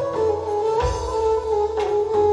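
Live band music: a sustained, wavering flute-like melody held over low hand-drum strokes about once a second, with keyboard and electric guitar.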